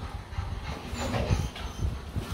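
A Rottweiler panting with its mouth open, with some shuffling as it gets to its feet.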